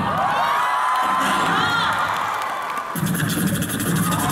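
Live audience cheering and screaming, many voices at once, over the stage sound system. A backing beat comes back in about three seconds in.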